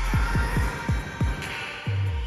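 Future bass electronic dance track with a run of deep, pitch-dropping kick drums that come faster and faster, building up. Near the end the track dips quieter and briefly pauses before a low bass comes back in. The mix is processed as '360°' spatial audio.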